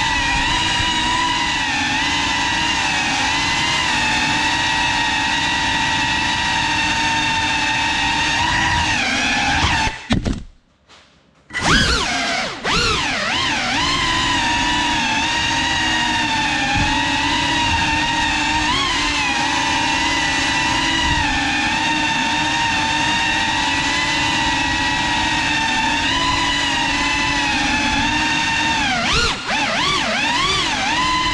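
The ducted brushless motors and propellers of a GEPRC CineLog 35 FPV cinewhoop drone whining steadily in flight, the pitch rising and dipping with the throttle. About ten seconds in the sound cuts out for about a second and a half, then comes back with quick rises and falls in pitch.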